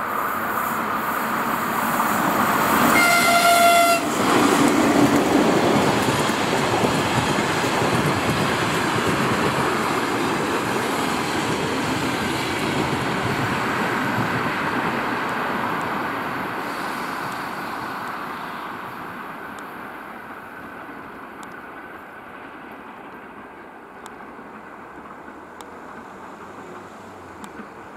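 ChS4 electric locomotive and its train of passenger coaches passing, with a steady rolling noise of wheels on the rails. The horn sounds once for about a second, about three seconds in. The rolling noise fades over the last ten seconds as the tail of the train moves away.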